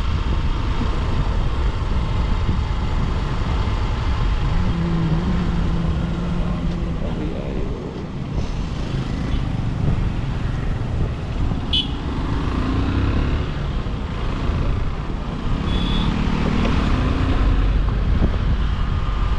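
Riding a motorcycle through city traffic: a steady rumble of engine and road noise, with wind on the microphone and other vehicles passing. A short high horn toot sounds about twelve seconds in.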